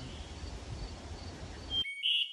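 Quiet outdoor ambience: a low wind rumble on the microphone with faint high chirps repeating every third of a second or so, cut off abruptly just before the end.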